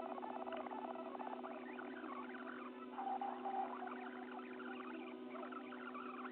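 Fast-forwarded car-interior audio: a steady two-note hum with rapid, high, squeaky chirps and fast ticking over it, all quiet.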